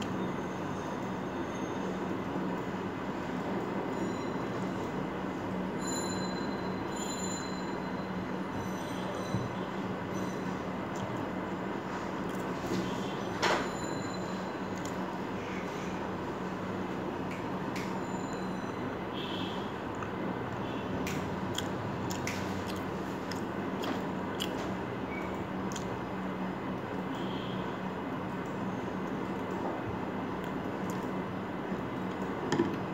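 Steady hiss and hum, with scattered faint clicks and mouth sounds of someone eating chocolate cake with a metal fork off a ceramic plate, and one sharper click about halfway through.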